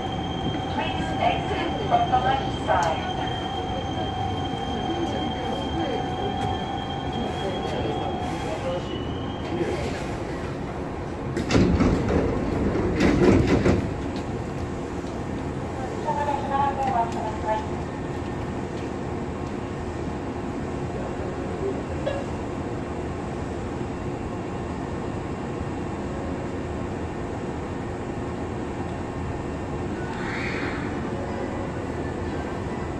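Hankyu 7000 series electric train running, heard from inside the car above its circuit breaker: steady rolling noise of wheels on rail with a thin steady whine that stops about nine seconds in. A louder burst of rattling comes between about 11 and 14 seconds, and a short squeal follows a couple of seconds later.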